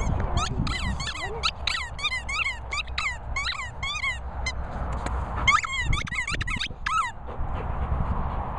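Rubber squeaky toy squeaking again and again as a Labrador chews it: a quick run of high squeaks, about two or three a second, for some four seconds, a short pause, then several more.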